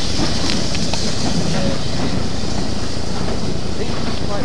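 Railway coaches rolling past close by on jointed track, with a steady rumble and wheels clicking over the rail joints.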